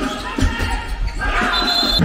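Handball match play in a sports hall: a handball bouncing and knocking on the court floor, with players' voices calling out, echoing in the large hall.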